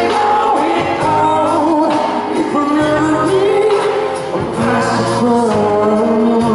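Live pop music: a male singer singing through a handheld microphone over amplified instrumental backing, the voice sliding and holding long notes.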